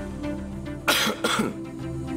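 A man coughing twice in quick succession, about a second in, over soft background music.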